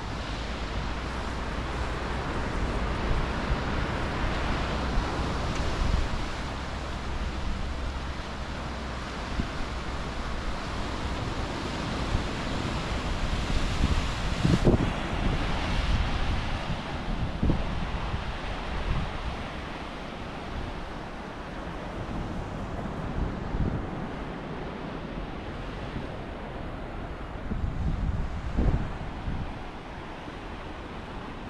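Sea surf washing and breaking over shoreline rocks, a steady rushing wash. Wind buffets the microphone in gusts, strongest around the middle and again near the end.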